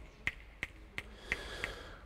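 A run of quiet, sharp snaps or clicks: about six in two seconds, unevenly spaced at roughly three a second.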